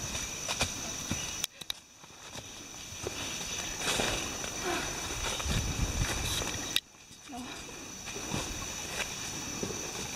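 Footsteps and rustling of hikers moving through leaf litter and undergrowth on a rainforest trail, with faint, indistinct voices and a steady high thin tone underneath. The sound drops away abruptly about a second and a half in and again near seven seconds.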